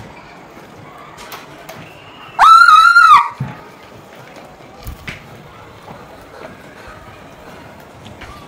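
A girl's high-pitched scream, very loud and just under a second long, about two and a half seconds in; the rest is quiet room sound.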